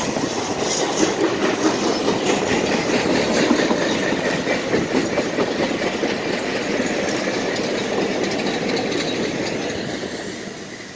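Passenger train coaches rolling past at speed, their steel wheels clattering in quick clicks over the rail joints. The sound eases off toward the end as the last coach and the trailing locomotive go by.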